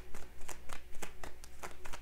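Tarot cards being shuffled by hand: a quick, irregular run of short clicks, several a second.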